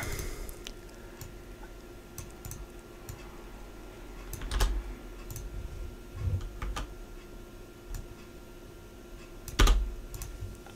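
Computer keyboard keys pressed now and then, a scattered handful of clicks, the loudest about four and a half seconds in and just before the end, over a faint steady hum.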